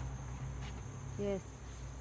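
Steady high-pitched drone of forest insects, with a low steady hum underneath.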